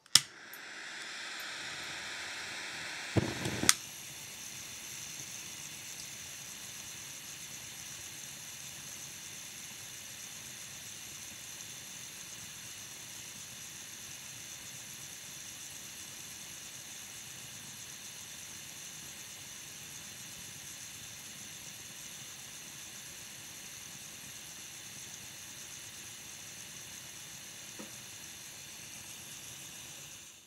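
Firebox gas burner on a propane-butane canister: a click and the hiss of gas flowing, then about three seconds in a short whoosh and a sharp click as it lights. After that the burner's flame runs with a steady hiss.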